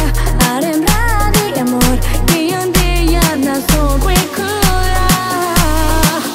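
Guaracha (aleteo) electronic dance music from a DJ mix: a fast, steady beat with a deep bass note about once a second, quick percussion ticks, and a lead melody that bends in pitch.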